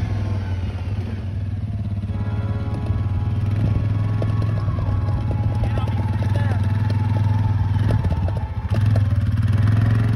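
ATV engine running steadily as the four-wheeler drives across grass, with rapid clattering ticks from about three seconds in and the engine getting louder near the end.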